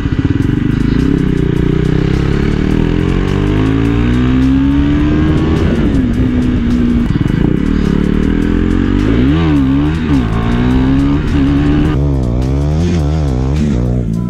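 KTM Duke motorcycle's single-cylinder engine running under way at low speed, its pitch rising and falling with the throttle. About nine seconds in, and again near the end, the rider quickly revs it up and down several times.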